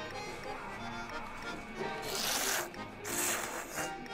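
Two loud slurps, one after the other in the second half, as tsukemen noodles and tomato dipping soup are sucked in from a bowl held to the mouth. Background music plays throughout.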